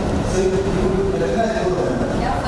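A man talking, over a steady low background rumble.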